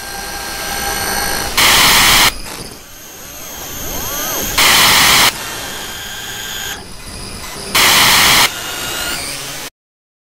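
Horror-film sound design: a droning ambience broken three times by loud bursts of static, each under a second long and about three seconds apart. The sound cuts off suddenly near the end.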